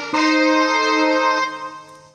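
A chord played on an electronic arranger keyboard, held for about a second and a half and then released, fading away.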